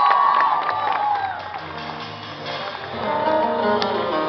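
Audience cheering with whistles that tail off in the first second or so, as the band's acoustic guitars start playing, with low bass notes underneath; the guitar playing fills out near the end.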